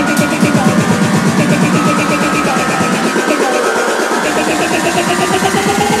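Tech house music mixed live on DJ decks: a fast repeating rhythmic pulse, with a tone rising steadily in pitch through the second half. The bass drops out for about a second around the middle and comes back in.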